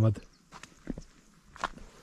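Footsteps on dry dirt and grass: a few short, irregularly spaced steps.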